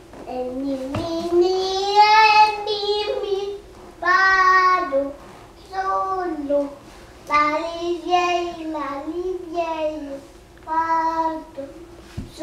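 A small child singing a French nursery song unaccompanied, in about six drawn-out phrases with short pauses between them.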